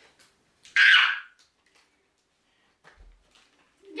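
A girl's short, high squeal about a second in, followed by a few faint clicks and rustles.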